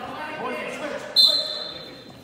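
A short, sharp whistle blast about a second in, a steady high tone that fades away over most of a second. It comes over the voices of spectators in a gym that echoes.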